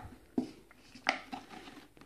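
Foil seal of a crisp tube being peeled back from the rim: two short, sharp crackles of the foil, about half a second and a second in, with a light rustle after the second.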